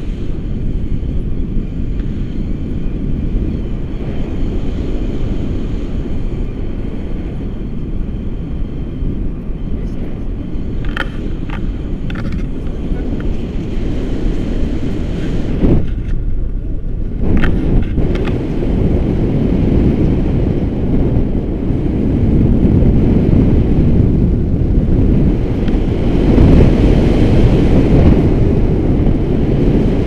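Wind buffeting the microphone of an action camera in flight under a tandem paraglider: a steady low rumble. It drops away briefly about halfway through and grows louder near the end.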